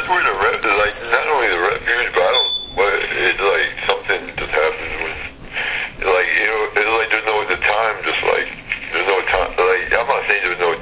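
Speech only: a voice talking steadily, with a thin, narrow sound.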